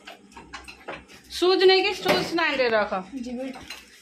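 Scattered light clicks and clinks, then a high-pitched voice sounding out for about a second and a half, held and then falling in pitch.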